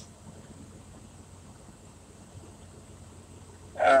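Low, steady background hum in a truck cab, with a man's short "uh" at the very end.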